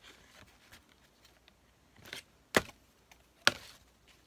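Clear plastic grid ruler being handled and set down on thick corrugated cardboard and a paper template: a brief rustle, then two sharp taps just under a second apart.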